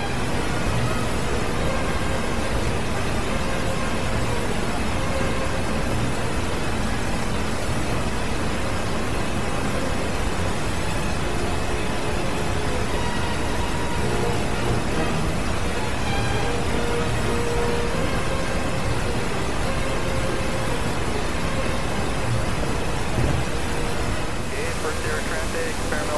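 Zenith CH701 light aircraft's engine and propeller running steadily with wind noise, heard loud and unbroken from inside the cockpit as it lands, easing slightly near the end.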